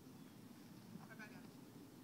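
Near silence, broken by one short, faint wavering call about a second in.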